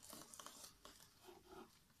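Near silence, with faint scattered crinkling and rustling as the cardboard puppets and cloth sea are handled.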